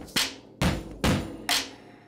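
Music with heavy percussive hits about twice a second, each ringing off. There are four hits, and the last one fades away near the end.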